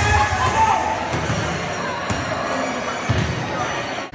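Crowd noise in a gym: spectators' voices and shouts over background music, with a couple of sharp knocks about one and two seconds in. The sound breaks off abruptly at the end.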